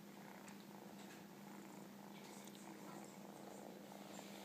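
A kitten purring faintly while nursing, with a few small faint clicks.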